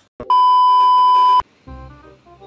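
A single loud, steady electronic beep about a second long that starts and stops abruptly, followed by background music starting near the end.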